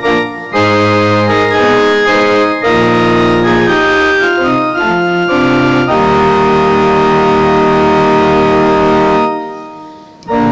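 Church organ playing the introduction to the entrance hymn in sustained chords. It ends on one long held chord that stops about a second before the end and fades in the church's echo.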